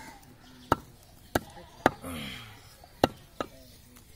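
A butcher's cleaver chopping goat meat into pieces on a wooden log block: five sharp, unevenly spaced chops.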